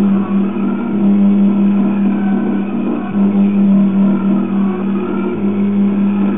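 Background instrumental music with a steady, sustained low note and overtones above it.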